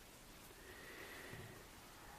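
Near silence: room tone in a pause, with a faint, thin high tone that swells and fades over about a second.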